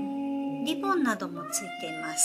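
Gentle instrumental background music with steady held notes. About a second in, a short pitched sound glides downward; it resembles a meow.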